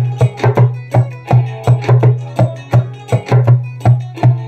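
Small rope-tuned djembe played by hand in a steady rhythm of about four to five strokes a second, deep ringing bass tones mixed with sharper, brighter slaps.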